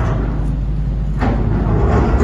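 Excavator working at an earth-and-rock tunnel wall, breaking it through: a steady deep machine rumble with a sharp knock about a second in.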